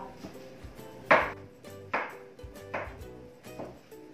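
Kitchen knife chopping on a cutting board: four separate chops, each a little under a second apart, the first the loudest.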